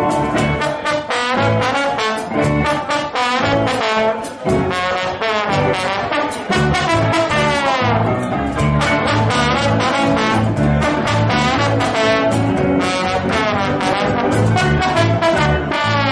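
Live band playing an instrumental passage with no vocals: a brass instrument carries a fast, running melodic line over a steady bass-and-drum beat.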